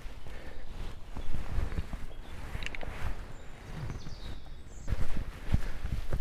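Footsteps of a person walking up a woodland path: irregular soft thuds, a little louder near the end.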